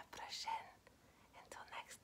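A person whispering close to the microphone: two short whispered phrases, one at the start and one near the end.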